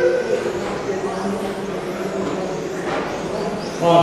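Electric RC touring cars with 13.5-turn brushless motors running laps of an indoor track, a steady whir mixed with the hall's echo. Muffled, echoing voice from the commentary runs over it.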